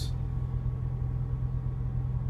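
Semi truck's diesel engine idling, a steady low hum heard from inside the cab.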